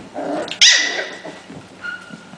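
Pembroke Welsh Corgi puppy, about five weeks old, giving a short growl and then one loud, high-pitched bark about half a second in, while play-fighting.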